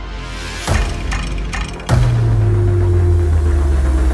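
Trailer score: a sharp percussive hit, then about two seconds in a louder deep boom that holds as a steady low drone.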